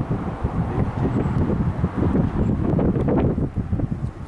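Wind buffeting the camera microphone: a loud, gusty rumble that rises and falls unevenly.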